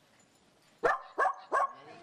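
A dog barking three quick times, starting about a second in, the first bark the loudest.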